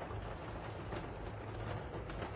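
Faint steady low hum over faint background noise: room tone in a pause between speech.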